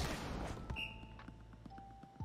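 Volleyball anime episode soundtrack: a sharp hit at the start with noise trailing away over about half a second, then a brief high tone just under a second in, over faint background music.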